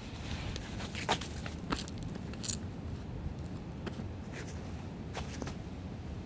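Footsteps on sand scattered with dry leaves: a few irregular steps and leaf rustles, over steady background noise.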